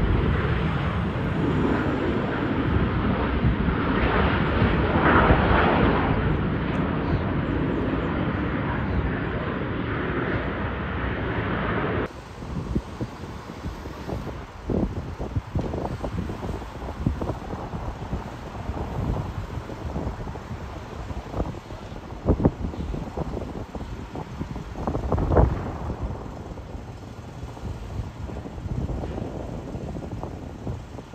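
Jet engine noise from a Southwest Boeing 737 on the airfield: a steady rumble that swells about five seconds in. About twelve seconds in the sound cuts suddenly to a quieter hiss broken by gusts of wind on the microphone.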